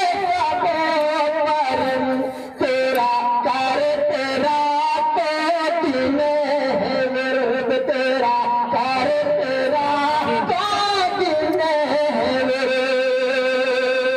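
A man's voice singing a naat (devotional Urdu poem) melodically, with gliding phrases and long held notes, amplified through a microphone and loudspeaker.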